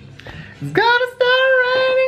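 A high singing voice holding one long note. It starts with a short upward slide about three-quarters of a second in and breaks off briefly partway through.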